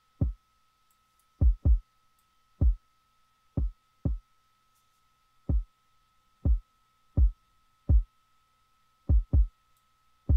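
Kick drum playing alone through FL Studio's Fruity Bass Boost plugin, about a dozen deep thumps in a syncopated beat, some in quick pairs, each falling fast in pitch. The boost frequency is being turned between about 48 and 60 Hz as it plays.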